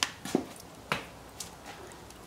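A few short, sharp clicks and taps in the first second and a half, over quiet room tone.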